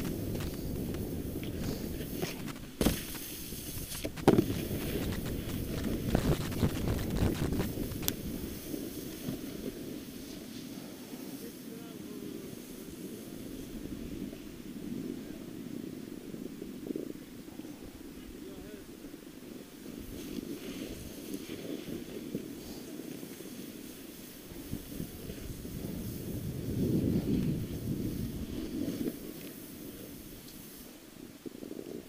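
Skis or snowboard sliding and scraping over packed snow on a downhill run, with wind rumbling on the camera microphone. Several sharp knocks in the first few seconds, likely bumps jarring the camera, and a louder stretch of scraping near the end.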